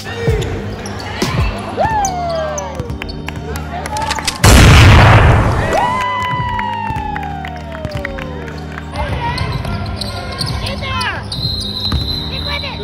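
A loud boom sound effect hits about four and a half seconds in and dies away over a second and a half, over gym sounds of a youth basketball game: the ball bouncing on the hardwood, players' and spectators' voices, and background music.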